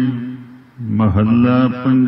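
A man chanting Gurbani verses in a slow, melodic recitation: a held note fades away, there is a brief pause for breath, and a new line begins about a second in.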